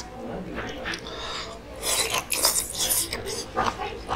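Close-miked slurping of ramen noodles and soup: a few quiet mouth sounds, then a loud hissing slurp in several pulls from about two seconds in.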